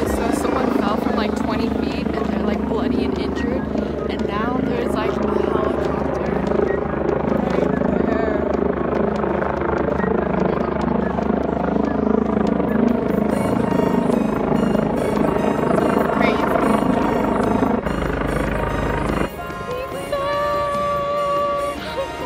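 Helicopter flying overhead, its rotor giving a steady chop, with people's voices under it; music comes in near the end.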